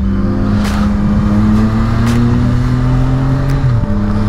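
Yamaha MT-09 Tracer's three-cylinder engine pulling under acceleration, its pitch rising slowly, with a brief dip near the end as the rider changes gear. Wind rumble on the helmet-camera microphone runs underneath.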